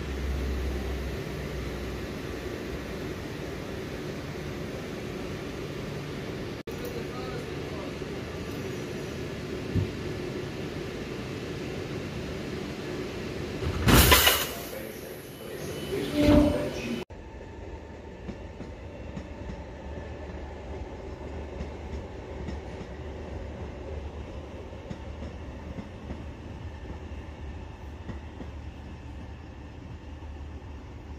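Trenord Alstom Coradia electric multiple unit standing at the platform with a steady electrical hum, broken by two brief loud sounds about fourteen and sixteen seconds in. After a sudden change, a more distant train runs with a quieter, even noise.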